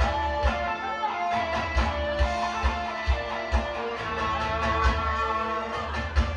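Instrumental intro of a Korean trot song, an electric guitar carrying the melody over a steady kick-drum beat of about two beats a second.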